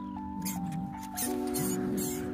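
Background music of sustained chords with a slowly stepping melody, and over it a few short, high squeaks from a mouse caught by a cat.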